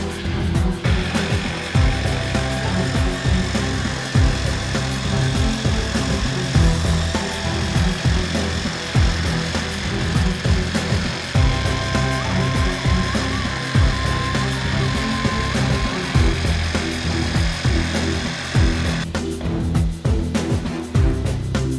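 Background music with a steady beat, with an electric tool running steadily underneath it from about a second in until shortly before the end.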